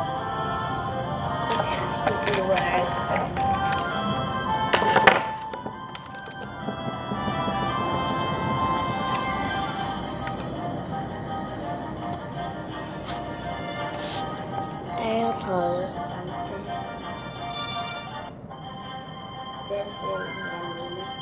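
Background music from a children's Bible story app plays steadily, with brief moments of a voice over it.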